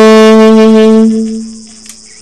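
Unaccompanied C melody saxophone holding one long low note that dies away after about a second and a half, ending the phrase.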